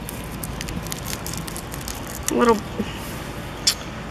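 Hands working onion sets into loose garden soil: scattered light crackles and taps over a steady low background rumble, with a sharper click near the end.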